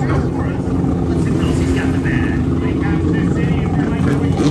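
Freestyle jet ski's engine running steadily as the rider spins it through the water.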